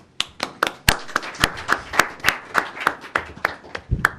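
Audience applauding, with distinct, evenly paced claps at about four a second.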